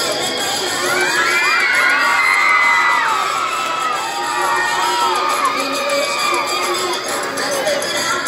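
A crowd of children shouting and cheering, many high voices overlapping, loudest about two to three seconds in.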